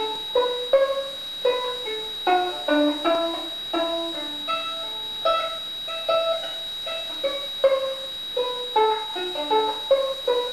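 Fiddle plucked pizzicato like a guitar, picking out a melody of single notes, a few a second, each one ringing briefly and dying away.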